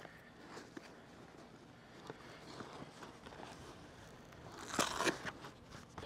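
Faint rustling and small clicks from a fabric camera sling bag being handled and packed, with a louder scratchy rasp about five seconds in.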